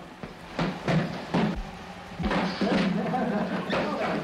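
Boxers sparring: about five irregular thuds of gloved blows and footwork in the ring, over voices in the background.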